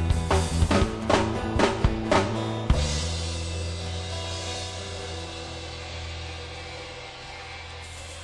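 Live rock band of amplified acoustic guitar, bass and drum kit ending a song: a run of accented drum-and-guitar hits, the last about three seconds in, then the final chord rings out and slowly fades.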